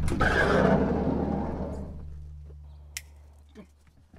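Sliding side door of a 1987 VW Westfalia camper van rolled open, a rumbling slide that dies away over about two seconds. A sharp click comes about three seconds in, and a few light taps follow near the end.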